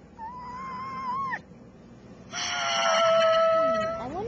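Two drawn-out, high-pitched vocal calls: a shorter wavering one that drops in pitch as it ends, then after about a second's pause a longer, louder, steady one.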